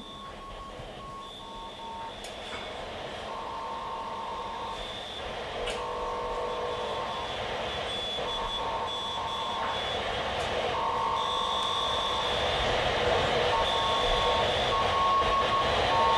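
Live electronic music played from a laptop: steady tones at a few fixed pitches switch on and off in overlapping segments over a rising noise, the whole growing steadily louder.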